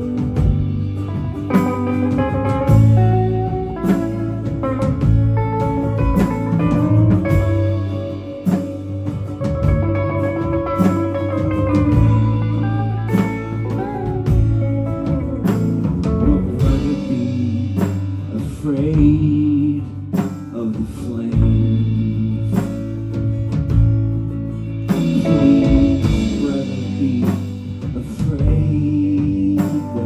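A live rock band playing an instrumental passage: electric and acoustic guitars over a drum kit, at a steady loud level.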